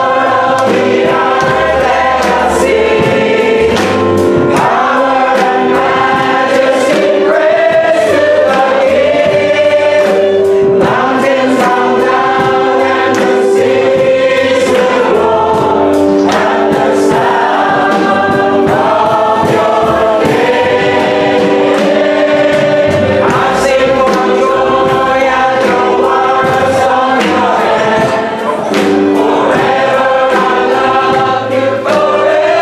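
A small mixed vocal group, men and women, singing a gospel-style Christian song in harmony, with held accompanying notes from violin and piano.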